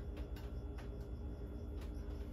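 A few light clicks, about two a second, of a utensil against a mixing bowl as the last pancake batter is scraped out, over a low steady hum.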